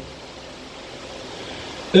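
Steady background hiss of room noise in a pause between spoken verses, with a man's reading voice coming back in right at the end.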